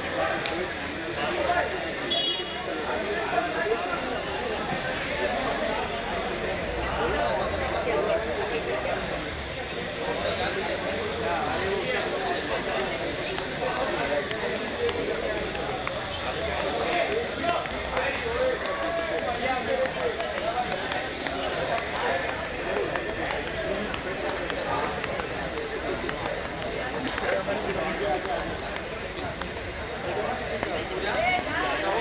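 Speech only: people talking continuously, with no other distinct sound standing out.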